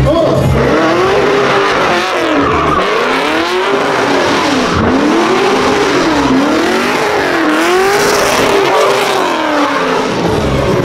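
Cadillac CTS-V's V8 revving hard and falling back over and over, about every second and a half, while it spins its rear tires through donuts. The tires squeal and smoke under the wheelspin.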